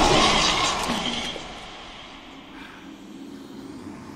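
Stone rubble crashing down and settling, dying away after about a second and a half into a quiet, steady ambient noise.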